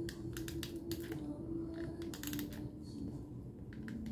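Small crackling clicks and paper rustling in short clusters as a paper sticker is handled and pressed onto a journal page, over a faint steady hum.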